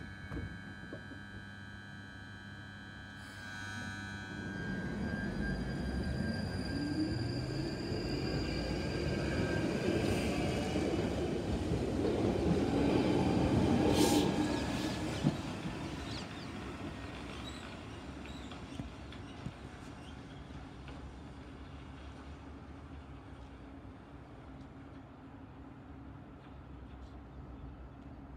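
London Underground Northern line 1995 Stock train pulling out of the platform. After a few seconds of steady hum it starts moving, its traction motors whining upward in pitch as it gathers speed. The wheel and rail noise grows to a peak with a sharp click about fourteen seconds in, then fades away as the train leaves.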